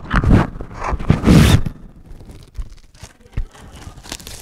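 Plastic shrink-wrap on a store-bought stretched canvas crinkling and tearing as it is handled: two loud rustling bursts in the first second and a half, then softer rustles and light clicks.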